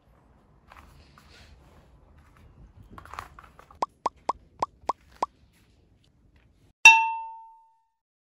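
An edited-in cartoon sound effect of six quick, short plinking notes, about four a second, followed by one bright bell-like ding that rings out and fades in under a second.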